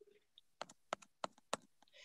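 Faint, irregular tapping of computer keyboard keys: about half a dozen sharp clicks over a second or so.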